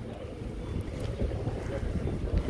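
Sea breeze buffeting the microphone, an uneven low rumble.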